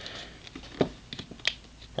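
Quiet handling of a Marvel Legends Venom plastic action figure as its stiff hip T-joint is worked by hand. There are a few sharp plastic clicks, the clearest about a second in and again near halfway through the second second.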